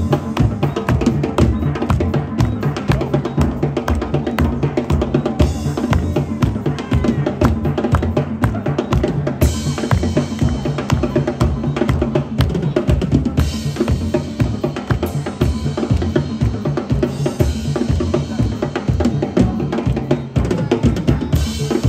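Music with a fast, driving drum-kit beat of bass drum, snare and rimshots, steady and loud throughout.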